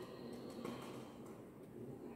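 Faint rustling of a paper sheet as powder is tipped from it into a glass mortar, over low room noise.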